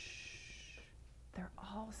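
A woman whispering, with a drawn-out hushing hiss in the first second, then a few soft spoken words near the end.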